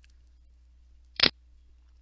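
A single short, sharp click about a second in, loud against a quiet background with a faint steady electrical hum.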